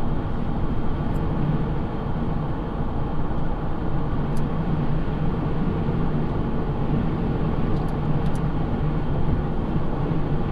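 Detroit Diesel 4-53 turbocharged two-stroke diesel running steadily at highway cruise, heard from inside the truck's cab with tyre and wind noise, as a constant drone with a low hum. It is running on propane injection alongside the diesel, running smoothly.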